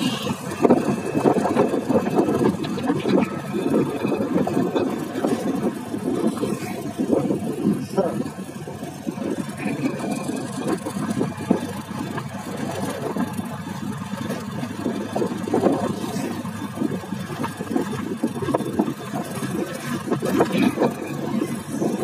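Motorcycle riding along a road: its engine running under a steady, fluttering rush of wind on the microphone.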